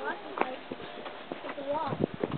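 Indistinct voices of people talking, with the clearest voice near the end, mixed with a few scattered sharp clicks or knocks.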